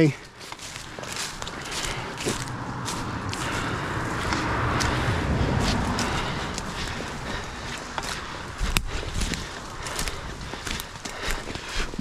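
Footsteps walking through grass and then into dry leaf litter, with brush and clothing rustling and a steady rushing noise that swells in the middle. There is one sharp click about nine seconds in.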